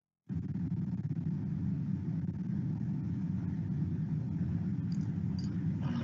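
Steady low rumble of background room noise on an open video-call microphone. It cuts in abruptly after a split second of dead silence.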